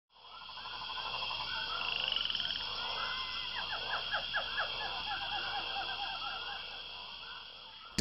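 Rainforest ambience of frogs calling, with a steady high drone and a run of quick repeated chirps in the middle. It fades in at the start and fades out near the end.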